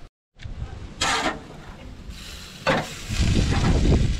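Chicken sizzling on a charcoal grill, with two short scraping bursts and a low rumble from about three seconds in.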